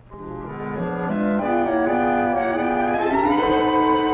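Brass-led orchestral cartoon score: sustained chords climbing step by step in pitch, swelling in from quiet over the first second.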